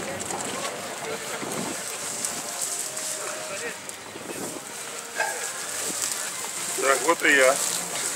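People talking in the background outdoors, mostly faint and indistinct, with a clearer voice about seven seconds in.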